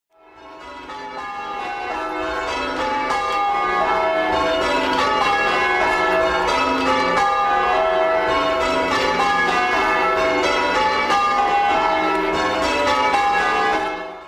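Church bells ringing in changes, many bells striking one after another in a steady stream of overlapping notes, fading in over the first few seconds.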